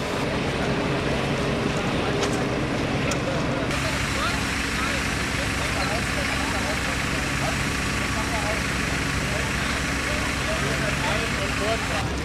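Fire engine and its pump running steadily, and from about four seconds in the hiss of a foam branch pipe spraying firefighting foam, with indistinct voices in the background.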